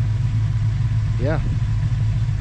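Steady low rumble of the Ramcharger's 360 Magnum V8 idling.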